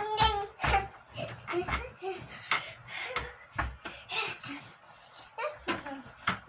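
A young boy's voice making short sung and babbled sounds while he dances and jumps. Dull thumps from his landings come several times in the first two seconds and once more midway.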